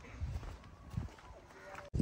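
Footsteps on sandy ground, a few soft thuds, with faint voices in the background.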